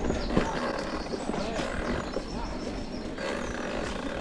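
Mountain bike rolling along a dirt forest singletrack: a steady rumble of tyres, drivetrain and wind buffeting the handlebar-mounted camera's microphone.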